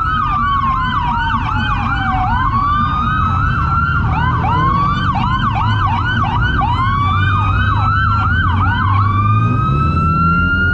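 Several police sirens sounding at once: fast, repeating yelps layered over a slow wail that falls and then rises again, with vehicle engines running underneath.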